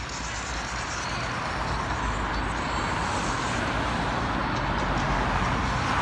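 A car driving past close by, its tyre and engine noise growing louder as it approaches near the end, with faint music underneath.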